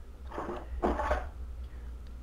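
Handling sounds as a lever-style corkscrew is lifted out of its fitted box and set on a wine bottle: two brief, soft scrapes in the first second.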